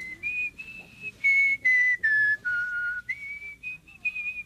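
A person whistling a short tune: a string of held notes that step down in pitch over the first three seconds, then jump back up near the end.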